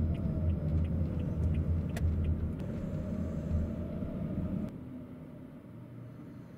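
Toyota Voxy minivan moving slowly, heard inside the cabin: a steady low engine and road rumble that drops and becomes quieter a little under five seconds in.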